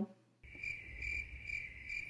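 Crickets chirping as a comedy sound effect for an awkward silence: a steady high trill that swells about three times a second. It starts after a brief dead silence and cuts off suddenly.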